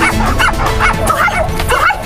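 A small puppy yipping and barking in a quick string of short, high calls, about five in two seconds, over background music.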